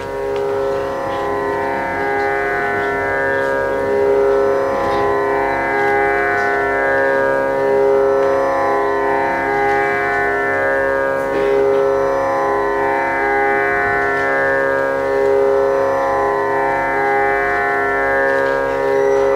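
A steady Indian classical drone: many held notes sounding together without a beat, slowly shimmering, in the manner of a tanpura or similar drone instrument.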